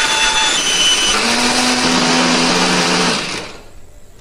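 Countertop glass-jar blender running at full speed, grinding shallots, garlic and candlenuts with a little water into a spice paste. It switches off a little before the end and winds down.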